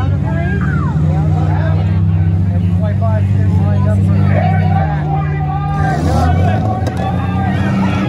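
Several compact demolition-derby cars' engines running at steady revs, a constant low drone with no clear impacts, under crowd chatter.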